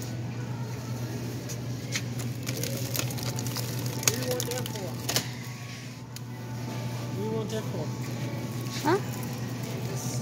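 Store background: a steady low hum with faint voices now and then, and scattered clicks and rustles of handling in the middle of the stretch.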